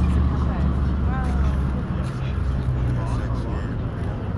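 A motor vehicle's engine running close by as a steady low hum that fades after about two to three seconds, with indistinct voices of people talking in the background.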